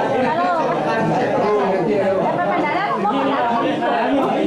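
Many people talking at once in a crowded room: continuous overlapping chatter with no break.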